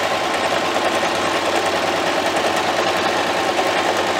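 A Singer domestic sewing machine running steadily without a pause, top-stitching around the edge of a laminated-fabric baby bib.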